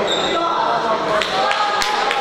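Three sharp smacks of boxing gloves landing in quick succession in the second half, over shouting voices from the crowd and corners.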